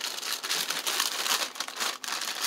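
Clear plastic packaging bag crinkling and rustling as it is handled, a dense run of small crackles.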